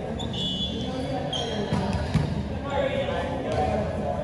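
A volleyball bouncing a few times on the hard floor of an indoor court under players' background chatter. A couple of short, high squeaks come early on and near the middle.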